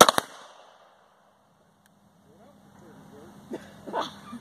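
Defenzia M09 less-lethal pistol firing: a sharp shot right at the start with a second crack about a fifth of a second after it, then another quieter crack near the end.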